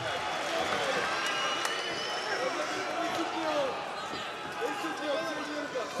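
Large arena crowd making a steady din, with scattered shouted voices rising out of it and a couple of sharp knocks early on.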